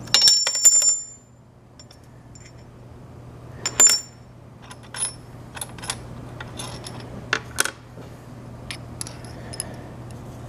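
Ringing metal-on-metal clinks from handling drill bits at a drill press chuck while the spotting drill is swapped for a larger I-size twist drill. There is a loud cluster of clinks in the first second, another near four seconds in, and lighter clicks after that.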